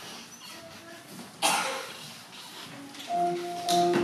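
A single loud cough about one and a half seconds in, over quiet hall noise. About three seconds in, a grand piano played four-hands begins with held notes.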